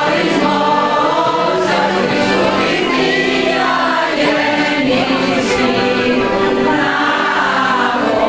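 A choir of women singing a hymn in several parts, accompanied by an accordion, with long held notes that change every second or two.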